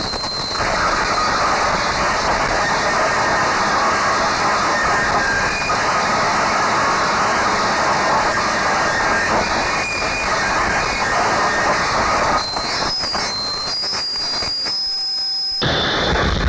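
Harsh noise music: a loud, dense wall of rough, hissing static. Near the end, thin high whistling tones step upward in pitch while the low rumble drops out, then the full noise returns.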